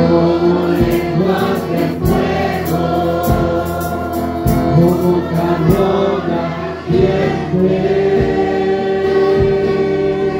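A congregation singing a worship hymn together in Spanish, with amplified instrumental accompaniment keeping a steady beat of about one stroke a second.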